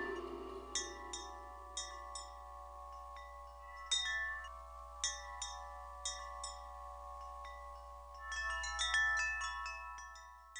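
Wind chimes ringing: scattered single strikes, each leaving long ringing tones, then a quick flurry of strikes about eight and a half seconds in.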